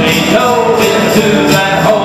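Live country song: a man singing over two strummed acoustic guitars, the strums keeping a steady beat.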